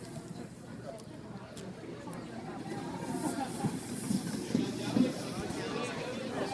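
Inline speed skates' wheels rolling on a wooden rink floor as a pack of racers comes past, the rolling hiss growing louder in the second half, over crowd chatter.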